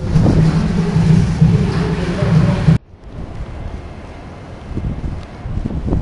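Heavy rain pouring down, with wind rumbling on the microphone. About three seconds in it cuts off abruptly, leaving a much quieter wet background.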